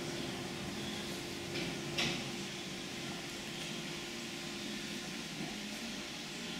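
Steady hum of the hotel room's air conditioning, with one short knock about two seconds in.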